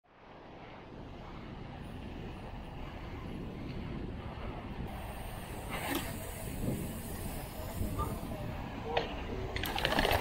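Riding noise from a mountain bike on paving stones, picked up by a camera on the bike: steady low wind rumble and tyre noise, with a few light clicks and knocks from the bike in the second half. The brake and gear cables do not rattle against the frame, cushioned by a rubber piece.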